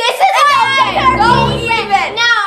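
Children's voices speaking, with music underneath.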